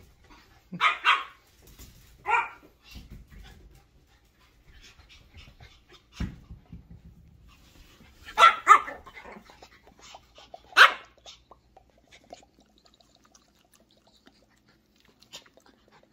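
Pomeranian barking in short, sharp, high yaps: two in the first few seconds, a quick pair about halfway through, and one more a couple of seconds later. The barks come from a dog up on its hind legs begging for a chicken drumstick.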